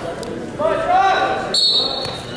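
A raised voice shouting across a gymnasium, loudest a little past the middle, with a short high steady tone near the end.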